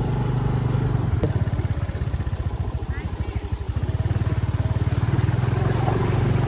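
Small motor scooter engine running at low speed, a steady fast putter, heard from on board as it is ridden slowly over a rough dirt track; the engine note eases slightly around the middle, then picks up again.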